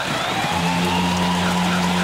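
Arena crowd cheering a home-team goal, with a steady low goal-horn blast and goal music from the arena speakers.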